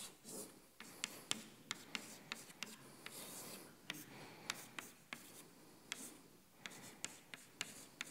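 Chalk writing on a blackboard: a string of irregular sharp taps as the chalk strikes the board, with faint scratchy strokes between them.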